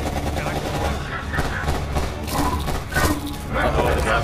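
Gunfire from a trailer's soundtrack, several shots, with people's voices mixed over it.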